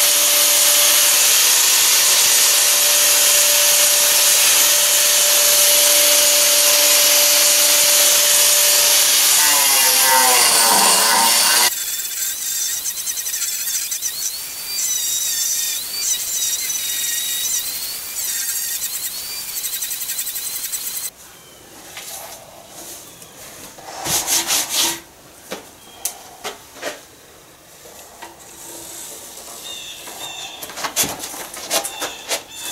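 Angle grinder with a flap disc sanding a carved wooden shovel handle: a loud, steady whine with a hiss of abrasion. About ten seconds in the pitch falls, and the loud sound stops suddenly, leaving quieter, uneven working noise and scattered knocks.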